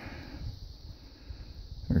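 A quiet pause with only faint, steady background noise; a man's voice comes back in at the very end.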